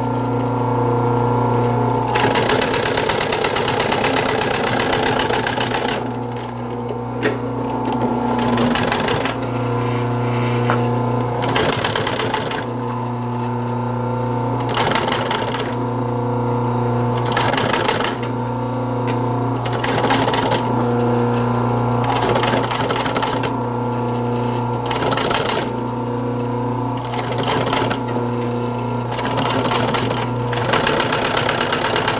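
Industrial sewing machine stitching a seam in upholstery fabric. It runs in repeated bursts of one to four seconds, stopping briefly between them, while the motor keeps up a steady hum through the pauses.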